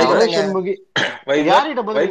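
Men's voices talking in a Twitter Space voice chat, with a short throat-clearing or cough-like burst about a second in.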